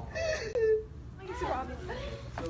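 Teenage boy crying, two wailing sobs. The first is the louder and falls in pitch. The second is weaker and comes about a second and a half in.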